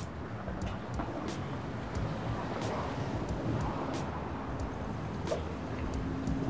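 City street traffic: cars driving past with a steady low rumble of engines and tyres on the road.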